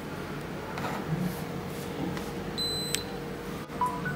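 Qi wireless charging pad giving a short high beep as the phone is set on it, the sign that charging has started; a click follows as the beep ends. Just before the end comes a brief two-note rising tone, over a faint steady hum.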